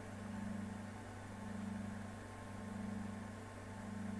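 Faint, steady low electrical hum with a light hiss: the background noise of the recording, heard in a pause between spoken phrases.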